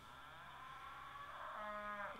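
A cow mooing faintly in one long, drawn-out moo that swells louder near the end.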